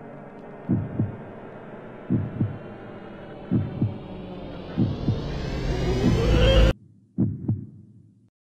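Heartbeat sound effect: slow paired low thumps, lub-dub, about every second and a half, over a droning hum that rises in pitch and swells louder. The drone cuts off suddenly near the end, leaving one last heartbeat that fades away.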